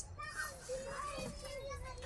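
Quiet children's voices in a small room: low chatter with one child's voice drawn out on a steady pitch for about a second, between loud shouted letters.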